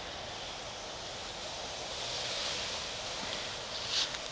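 Steady outdoor background hiss with no distinct events, swelling slightly about halfway through.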